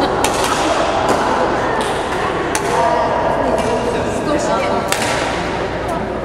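Badminton rackets hitting a shuttlecock in a rally: sharp cracks about once a second, echoing in a gym hall, over a murmur of voices.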